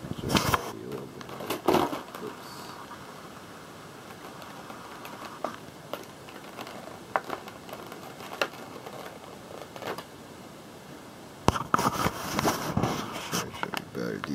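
Handling noise: scattered clicks and crinkles as a clear plastic blister package and the phone filming it are moved about, with a busier stretch of rustling clicks near the end.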